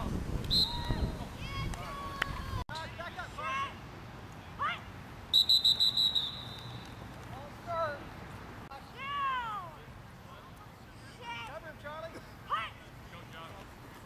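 Scattered shouting voices from the sideline and field of a youth football game. About five seconds in comes a loud, warbling blast of about a second on a referee's whistle, the sign that the play is dead.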